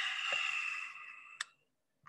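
Handling noise of a camera being tilted down on its mount: a scraping rub with a thin steady whine that fades over about a second and a half, ending in a sharp click.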